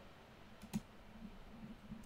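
Two faint clicks of computer keys, close together shortly before the middle, over quiet room tone.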